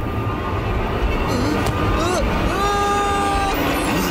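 Cartoon sound effects: a deep, continuous rumbling, with a short gliding vocal sound about two seconds in and a held vocal cry from a character for about a second after that.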